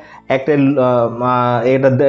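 A man's speech only: a brief pause, then talking on with one long drawn-out vowel held at a steady pitch about a second in.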